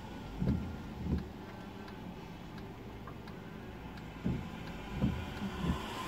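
Windscreen wipers sweeping across a rain-wet windscreen, heard inside the car: two short swishes near the start, a pause, then three more near the end. Under them run a low engine hum and faint ticking of raindrops on the glass.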